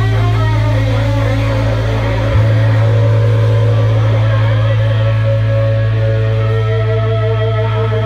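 Live rock band with electric guitars playing a sustained passage: long held guitar notes with a wavering vibrato over a steady low note that holds underneath, with no distinct drum hits standing out.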